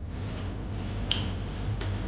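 Two short, sharp clicks a little under a second apart, over a steady low hum.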